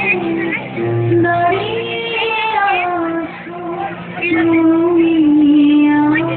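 Music: a high singing voice holding long notes that slide up and down, over a low steady accompanying tone.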